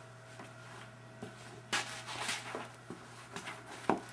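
Handling noise from a handheld camera being moved about: soft irregular knocks and rustles, a little louder about two seconds in, over a low steady hum.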